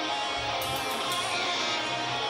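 Live extreme metal band playing, electric guitars holding sustained chords.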